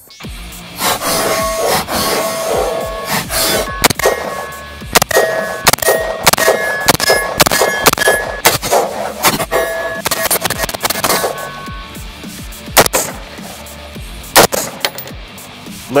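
A series of rifle shots from a full-size AR-15 with a 16-inch barrel, fired at an irregular pace, with metallic ringing clangs, over background music.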